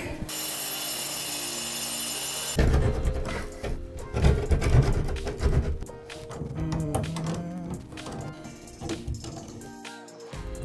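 Background music over irregular metal clanks and knocks as pliers work on a tub-and-shower valve's pipe fittings. The clanking is loudest a few seconds in.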